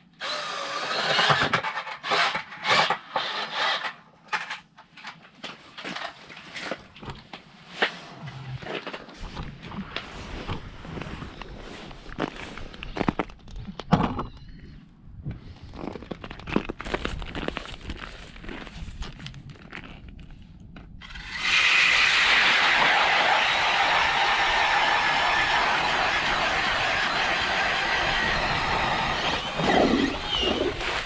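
An 8-inch StrikeMaster Lite-Flite ice auger with chipper blades, driven by a non-brushless cordless drill, boring into lake ice. It runs steadily for about eight seconds, starting about two-thirds of the way in. Before it come irregular knocks and clatter.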